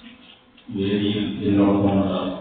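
A man's voice, after a brief pause, holding one long chanted note that begins about two-thirds of a second in.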